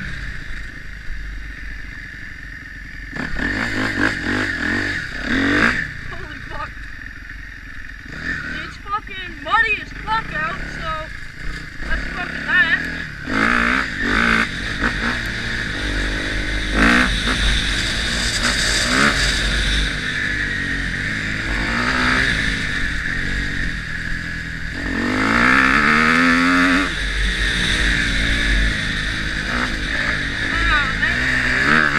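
Kawasaki KX250F four-stroke single-cylinder dirt bike engine revving up and down through the throttle while being ridden, with a long rising rev about 25 seconds in. It is heard through a GoPro's built-in microphone along with wind noise.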